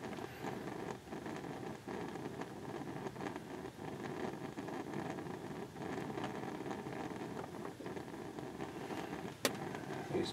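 Steady noisy hiss with faint scattered ticks, and one sharp click near the end.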